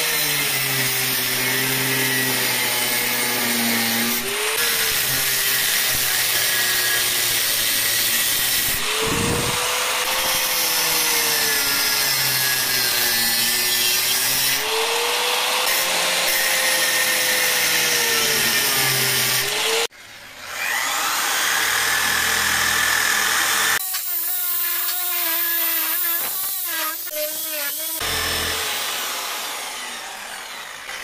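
Angle grinder with an abrasive cut-off disc cutting through a cast bronze piece, the motor's pitch rising and falling as the disc bites into the metal. The sound cuts out suddenly about 20 seconds in, then the grinder runs again, fading near the end.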